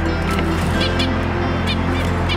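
Zebra finches giving several short calls in quick succession, over background music with a steady low sustained tone.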